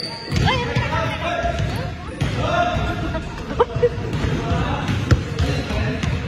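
Basketballs bouncing on a hardwood gym floor during play, with a couple of sharper thuds and short squeaks over the game.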